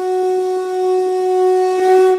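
One long, steady blown note on a wind instrument with a horn-like tone, swelling slightly near the end before it fades.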